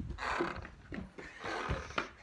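Two rushing bursts of noise close on a phone's microphone, one at the start and one about one and a half seconds in, with low rumbling beneath.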